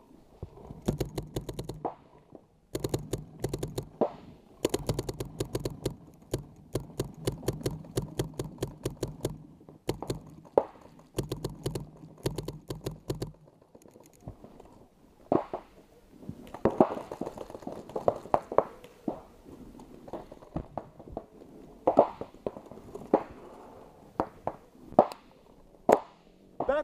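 Paintball marker fire in rapid strings of shots, with short breaks between strings, from about a second in until about thirteen seconds in, then scattered single pops for the rest.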